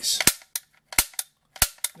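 Marx Toys Mare's Leg toy click rifle being dry-fired: three sharp clicks about two-thirds of a second apart, each followed by a lighter click. The trigger mechanism is working perfectly, clicking without sticking.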